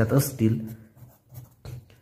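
Pencil writing four digits on a workbook page: short, faint scratching strokes, after a voice trails off in the first half second.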